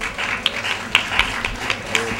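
Audience applauding: a scattering of sharp hand claps over a steady wash of clapping.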